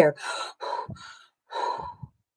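A woman panting: three loud, gasping breaths in quick succession, acted out as being out of breath from running.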